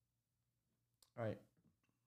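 Near silence, then a single sharp click about a second in, followed right away by a man saying "all right" and a couple of faint clicks near the end.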